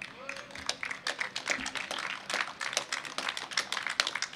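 A crowd clapping: many scattered hand claps that start suddenly and keep up a dense, uneven patter.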